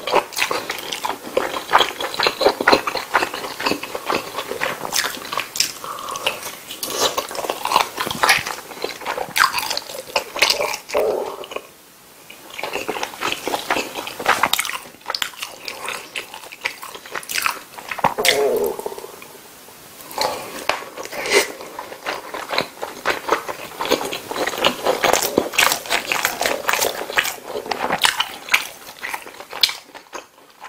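Close-miked chewing of a soft meatball and sauced spaghetti, with wet mouth smacks and many quick clicks. The chewing lets up briefly twice, about twelve seconds in and again around nineteen seconds.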